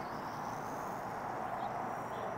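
Steady background hiss with a faint thin high tone above it, and no distinct event.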